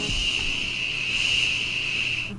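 A single steady, high-pitched electronic beep, one long tone held for about two seconds that cuts off suddenly.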